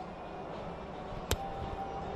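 Steady background ambience of a large indoor car showroom, with one sharp click a little past halfway through.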